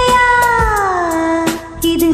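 A woman singing one long held note that slides down in pitch about half a second in, then holds steady, over a karaoke backing track.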